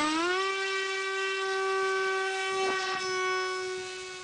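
HIMAX 2816-1220 brushless outrunner motor driving an 8x6 propeller on an electric Zagi flying wing in flight. Its whine rises in pitch for about half a second at the start, then holds a steady tone.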